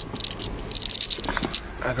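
Clicking and rustling of handling and movement over a steady low hum from the 2012 Honda Accord's engine idling on a cold start.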